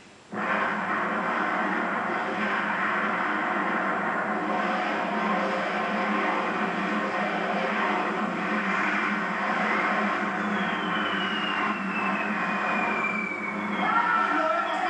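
Battle-scene soundtrack of a war film playing on a television: a steady, loud mass of sound that starts suddenly just after the start, with a high whistle falling in pitch over the last few seconds.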